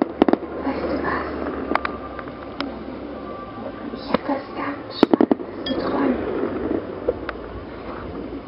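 Background voices of people talking, with several sharp clicks, including a quick run of clicks about five seconds in.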